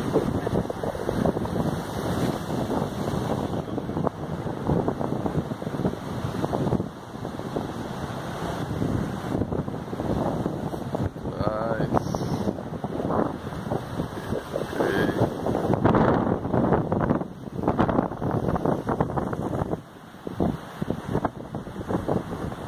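Wind buffeting a phone's microphone in uneven gusts, over the wash of sea surf breaking on rocks.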